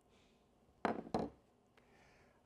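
Two sharp knocks about a second in, a third of a second apart: a hammer striking while nailing a wooden Langstroth hive frame together.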